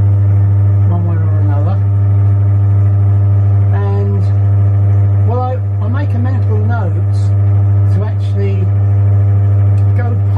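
Milling machine running with its spindle turning a hole centre finder, a loud, steady low hum.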